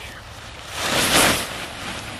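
Outbound pop-up tent springing open from its folded coil: one rushing whoosh of nylon fabric and flexing frame that swells and fades over about a second.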